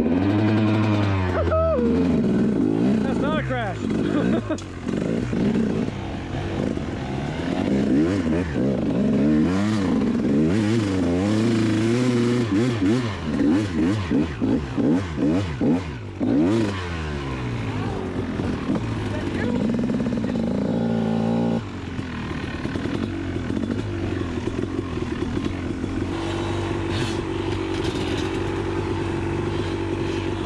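KTM two-stroke dirt bike engine revving up and down again and again as the bike is ridden. About two-thirds of the way through the note drops suddenly and settles to a steadier, more even running sound.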